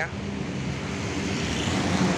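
Steady low rumble of motor vehicle engines and road traffic. The traffic noise swells near the end.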